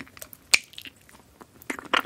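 Close-up mouth sounds of biting and sucking soft jelly pushed up from a plastic push-pop tube: a sharp click about half a second in, then a quick run of wet smacking clicks near the end.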